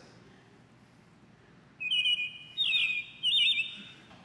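Apple Watch hourly chime marking the turn of the hour. About two seconds in, a high, clear, chirp-like tone sounds, followed by two quick warbling trills.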